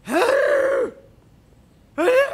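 A man's loud strangled vocal noise, just under a second long, in place of an answer. Its pitch rises, holds, then drops as it cuts off.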